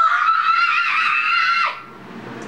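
A girl's high-pitched scream, one long held note that cuts off abruptly about a second and a half in.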